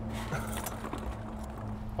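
Steady low hum in a car cabin, with faint rustling and a few small ticks from food packaging being handled.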